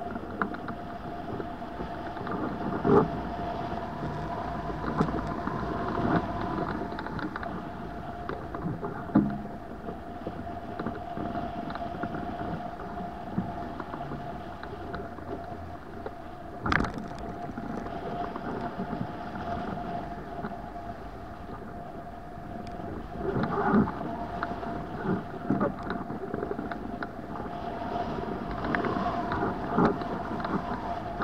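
Rushing airflow over a hang glider in flight, buffeting a wing-mounted camera's microphone, with a steady faint tone running under it. Occasional short knocks break through, the sharpest a little past halfway.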